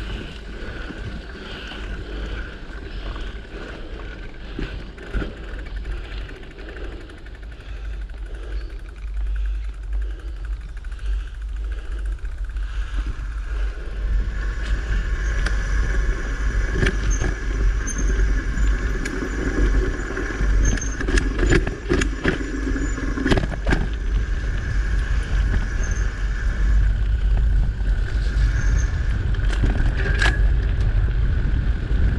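Mountain bike ridden on a dirt singletrack, heard from a camera on the bike: wind buffeting the microphone over the rumble of the tyres on the dirt. It gets louder about halfway through, with a run of sharp clicks and rattles from the bike over the bumps.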